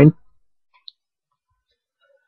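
A man's voice trails off at the start, then near silence with one faint, short click about a second in.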